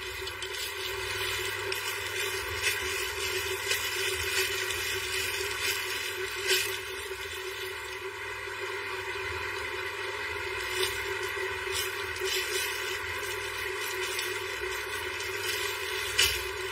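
Clear plastic wrapping on stacked clothing sets crinkling and rustling in short crackles as the bundles are handled and tied, over a steady background hum.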